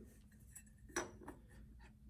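Metal CVT parts handled and set down on a workbench, with a single light clink about a second in.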